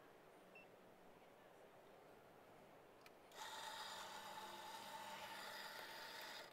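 An electric coffee grinder switches on about three seconds in, and its motor runs steadily with an even mechanical whir. Before that there is only faint room tone.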